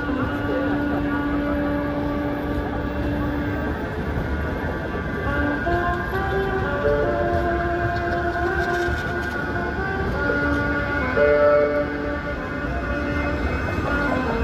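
Manchester Metrolink M5000 trams moving through a street stop: a steady low rumble of wheels on the rails, with sustained tones that step up and down in pitch. There is a brief louder swell about eleven seconds in.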